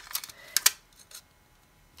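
Small adhesive-backed paper pieces being handled and peeled from their backing sheet: a few short crackles and clicks in the first second, the loudest just over half a second in.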